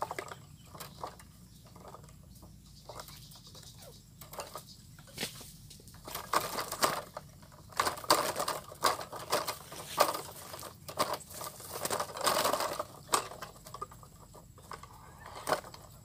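A trapped wild quail scrambling and fluttering inside a small wire-mesh trap cage, its wings and feet rustling against the wire and the dry grass in irregular bursts that become louder and more frequent from about six seconds in.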